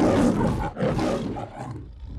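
The lion's roar of the MGM studio logo: two roars, the first the loudest, the second fading away near the end.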